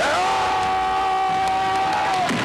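A man's single long yell, held on one steady pitch.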